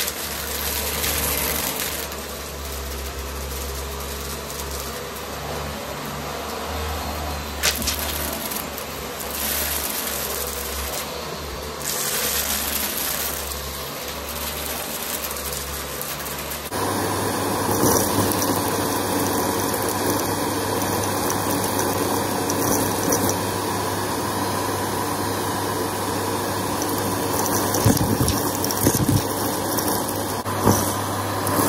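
Vax upright vacuum cleaner running over a carpet covered in powder and debris, sucking it up. About 17 s in the sound changes suddenly to a louder, steadier run with a stronger hum, and near the end a few sharp clicks and rattles of debris going up the nozzle.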